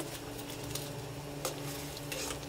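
Sweet and sour sauce simmering in a wok, with a couple of light knocks as fried chicken pieces drop in.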